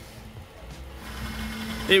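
Low, steady hum of a motor running in the background, growing louder about half a second in.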